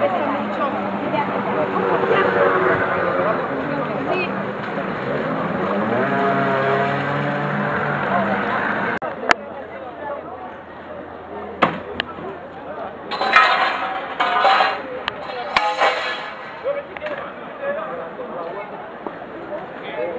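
Several voices talking over one another, none clearly heard, for about nine seconds. After a sudden drop in level comes a quieter outdoor background with a few sharp clicks and two short bursts of rustling noise.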